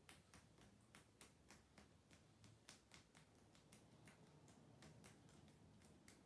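Near silence: room tone with faint, irregular ticking clicks, several a second.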